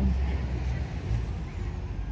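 Low, steady outdoor rumble, heaviest in the bass and without any clear pitch.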